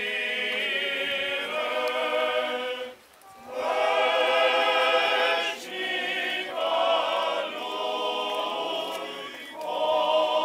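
Male choir of Orthodox clergy singing a cappella funeral chant in several parts. There is a short break about three seconds in, and then the singing comes back louder.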